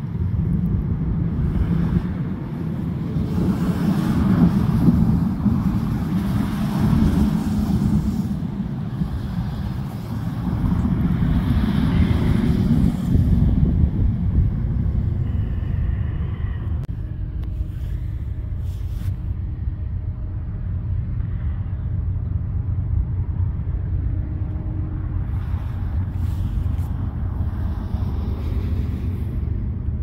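Wind buffeting a phone microphone outdoors, a steady low rumble that swells in gusts in the first half and settles lower in the second.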